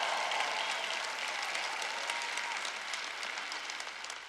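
Live audience applauding, the clapping fading away gradually.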